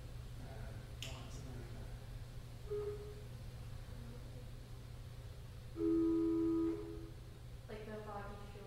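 Pipe organ sounding a short note about three seconds in, then a louder held two-note chord for about a second near six seconds, steady in pitch; a woman's singing voice comes in just before the end. A steady low hum runs underneath.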